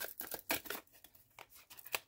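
A deck of tarot cards being handled and shuffled by hand as a card is drawn out: a quick, uneven run of papery clicks and slides.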